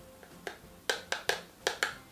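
A woman laughing softly under her breath: about six short, breathy puffs in quick succession, starting about half a second in.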